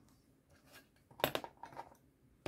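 A few sharp, light clicks and taps from a plastic ship-model hull and small tools being handled on a workbench: a cluster about a second in, then two more shortly after.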